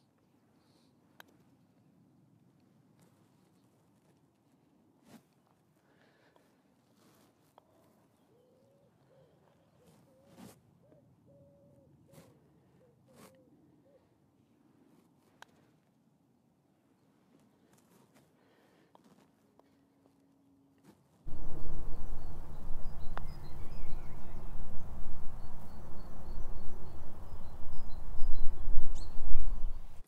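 Wind buffeting the microphone, a loud uneven rumble that starts abruptly about two-thirds of the way in and lasts to the end. Before it the green is almost silent: a faint click about a second in as the putt is struck, and midway a faint bird calling in a short run of low hoots.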